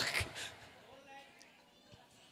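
A man's amplified voice finishing a phrase, then a quiet pause with faint room sound.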